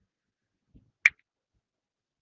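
A single short, sharp click about a second in, preceded by a faint low knock.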